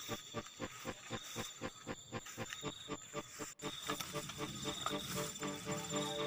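Forest ambience: rapid, evenly spaced pulsing calls, about five a second, over a steady high insect trill. About halfway through, sustained tones like music come in underneath.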